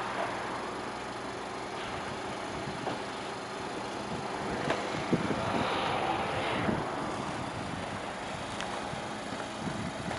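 Audi A3 1.2 TFSI engine idling, a low steady hum. A few soft knocks and clicks come about five to seven seconds in, as the driver's door is opened and someone climbs out.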